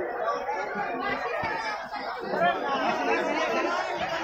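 Crowd chatter: many passengers talking over one another at once, a steady babble of voices.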